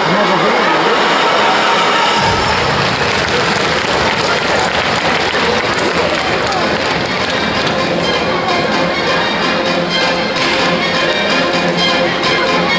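Audience applause in a circus arena, with band music coming in about two seconds in and playing on with a steady beat.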